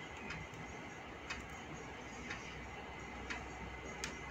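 A clock ticking faintly about once a second over quiet room tone.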